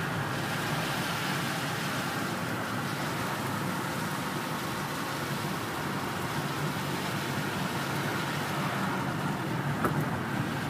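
Steady engine and road noise heard from inside the cabin of a moving Citroën van, with one brief click near the end.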